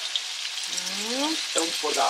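Diced aubergine and pancetta frying in oil in a pan, a steady sizzle, with whole peeled tomatoes just tipped in on top.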